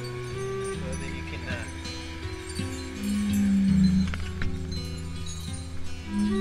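Background music with held notes stepping over a slow bass line.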